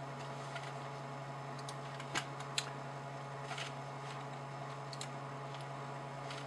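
A steady low hum of room background, with a few soft clicks of a computer mouse: one about two seconds in, another shortly after, and more around three and a half and five seconds.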